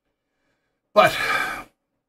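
Near silence for about a second, then a man says one drawn-out, breathy 'But' that falls slightly in pitch.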